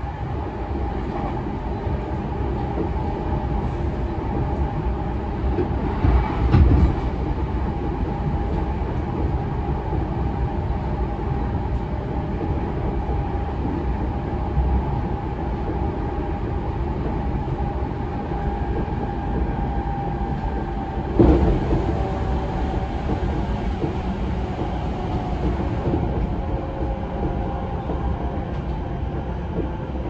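Interior running sound of a JR East E233 series 0 electric commuter train at speed: a steady rumble of wheels on rail with a steady whine above it. Two short, louder knocks come about six and twenty-one seconds in.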